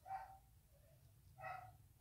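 Two faint, short animal calls, each a pitched yelp lasting a fraction of a second, about a second and a quarter apart.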